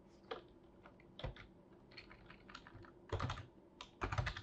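Computer keyboard keystrokes, faint and irregular, with a quick run of several keys about three seconds in.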